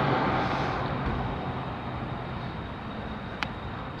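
Road traffic noise, a vehicle's sound fading away steadily, with one light click about three and a half seconds in.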